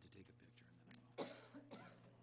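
A cough about a second in, with a smaller one just after, over faint murmuring and a low steady hum in a quiet room.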